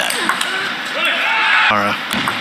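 Table tennis rally: the plastic ball is struck by rubber-faced bats and bounces on the table with sharp pings. A voice calls out near the end as the point finishes.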